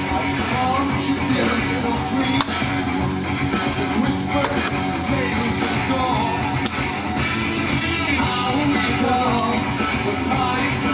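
Rock music playing continuously and fairly loud: a rock song with guitar and singing.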